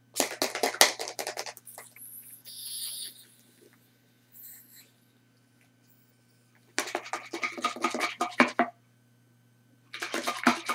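Plastic baby bottle being tipped and shaken, with vinegar sloshing and rattling against baking soda inside in quick strokes. A short fizzing hiss follows as the reaction releases carbon dioxide. A second bout of shaking comes about seven seconds in.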